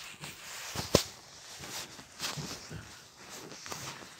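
Footsteps on wooden floorboards with scattered light knocks, and one sharp click about a second in.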